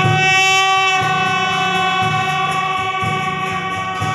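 Brass marching band holding one long sustained chord of horns over a low pulsing bass beat.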